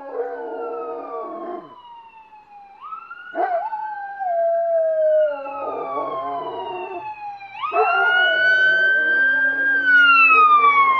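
Police car siren wailing: it climbs quickly and then slides slowly down, twice, about three seconds in and again near eight seconds. Dogs howl and bark along with it in several stretches.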